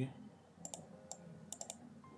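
About six sharp clicks of a computer mouse, some in quick pairs, as items are clicked in the Visual Studio designer and its Properties panel.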